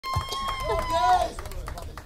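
Voices talking, with a steady high-pitched tone held for about the first second before it fades, over a low rumble.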